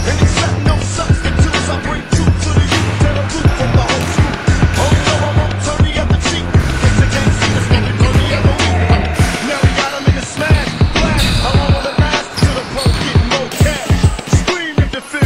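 A basketball bouncing on a hardwood gym floor, with music over it carrying a steady deep bass line. The bass drops out about nine seconds in, and the sharp knocks of the ball go on after it.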